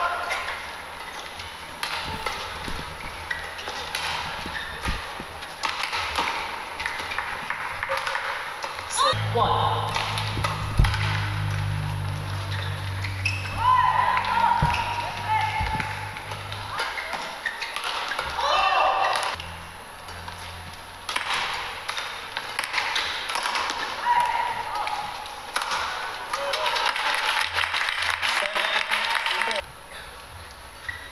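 Badminton rallies heard on court: rackets strike the shuttlecock in sharp, quick hits, and shoes squeal in short glides on the court mat. Voices and cheers come between points.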